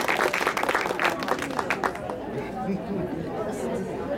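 Spectators clapping together with crowd chatter; the clapping dies away about two seconds in, leaving the murmur of voices.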